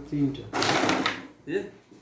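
Carrom striker flicked into the cluster of wooden carrom men: a sharp clatter of discs knocking together about half a second in, with a shorter knock about a second later.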